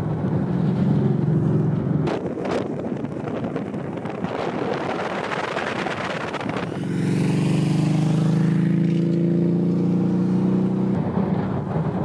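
Road and wind rumble of a moving car for the first six or seven seconds, then a cruiser motorcycle's engine running steadily under way, a strong low hum, for about four seconds before the rumble returns.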